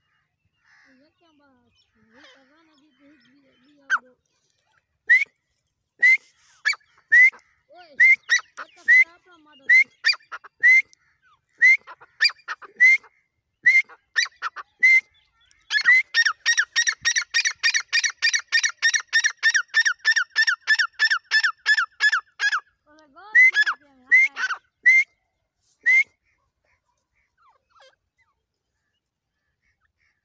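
Grey francolin (teetar) calling: loud, sharp single notes about once a second, then a fast, even run of about three notes a second for some six seconds, then a few more notes before it stops.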